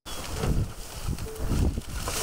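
Outdoor sound of litter being gathered: rustling and scraping of plastic bags and trash, with wind rumbling on the microphone in repeated low gusts.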